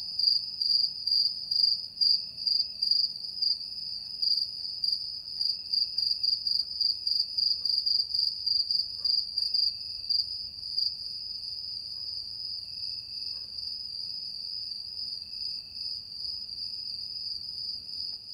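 Crickets chirping: a steady high-pitched trill that pulses two or three times a second.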